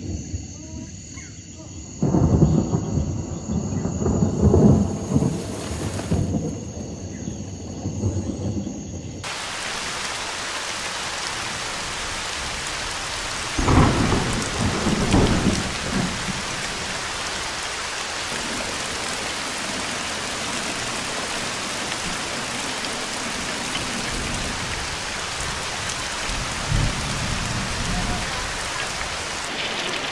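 Rolling thunder, then heavy tropical rain pouring down in a steady hiss from about a third of the way in, with a second roll of thunder soon after the rain begins.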